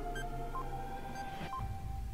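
Quiz countdown timer sound effect: short electronic beeps, one a second, two in this stretch, over a faint steady held tone.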